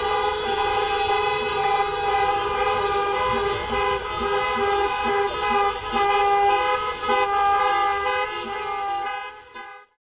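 Several car horns held down together in a continuous chorus of steady tones, a honking protest by a slow-moving caravan of cars, with engine and traffic noise beneath; it fades out just before the end.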